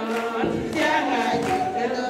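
Several voices singing together, holding long notes that change pitch every half second or so.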